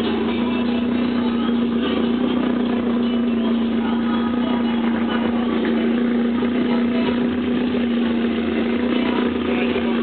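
A steady, unbroken mechanical hum, with faint voices and music mixed in behind it.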